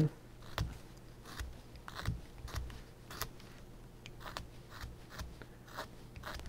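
A carving knife making short slicing cuts in a kiln-dried basswood stick: faint, crisp clicks and scrapes of the blade shaving wood, irregular at about two a second.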